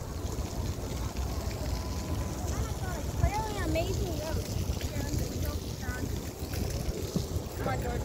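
Wind buffeting a phone's microphone, a steady low rumble, with faint distant voices about three to four seconds in.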